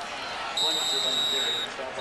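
A referee's whistle blown once, a steady shrill note that starts about half a second in and lasts about a second, signalling the play dead after the ball carrier is tackled.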